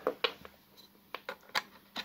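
About six sharp, irregular plastic clicks and taps from handling a SOIC test clip and a USB EEPROM programmer.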